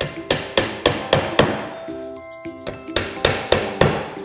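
A hammer driving nails into cedar birdhouse boards: quick sharp blows, about three or four a second, in two runs with a short pause about halfway.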